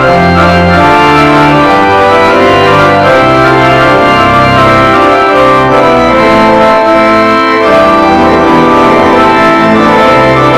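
Church organ playing a slow piece in sustained, full chords, with the bass line stepping to a new note about every second.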